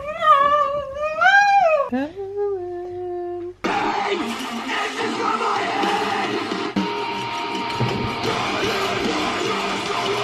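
A voice singing long, wavering, drawn-out notes that slide down to a held lower note. About three and a half seconds in, it cuts off suddenly and loud music with a full band sound takes over.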